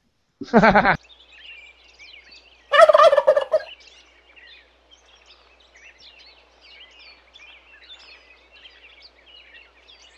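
A turkey gobbling once, loud and lasting about a second, about three seconds in. Faint high chirping carries on in the background.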